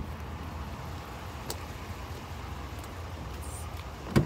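Steady low background rumble, with one faint click about a second and a half in.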